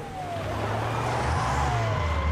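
An ambulance driving up, its engine and road noise growing louder, with a siren tone gliding down in pitch twice.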